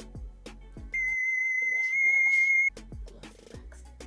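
Background music with a steady beat, broken about a second in by a censor bleep: one loud, high, steady electronic beep lasting nearly two seconds.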